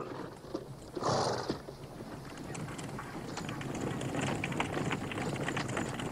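Horses' hooves clip-clopping on a road, drawing a chariot, with a rattle of the moving chariot. The hoofbeats grow louder and denser as it approaches, after a brief rush of noise about a second in.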